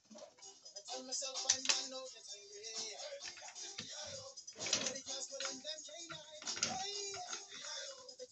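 Plastic Lego bricks clicking and rattling as they are picked up and pressed onto a baseplate, over music playing in the background.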